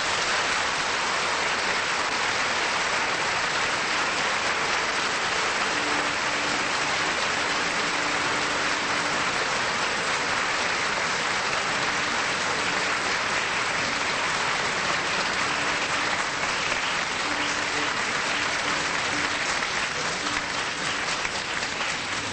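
Theatre audience applauding at the end of an operatic aria: a dense, steady ovation that starts as the music stops and thins into scattered claps near the end.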